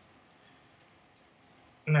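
Faint scattered light ticks and crinkles from a small sample bottle being handled as parafilm is picked off its cap. A short spoken word comes near the end.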